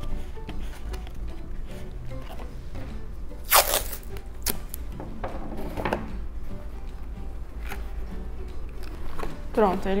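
Masking tape being pulled and torn from its roll, the loudest a short rasp about three and a half seconds in, followed by a few softer rips along with the handling of cardboard.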